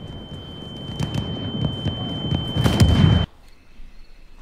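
Film battle sound design: muffled rumble and scattered cracks under a single steady high-pitched ringing tone, like ears ringing after a blast. It grows louder, then cuts off abruptly about three seconds in.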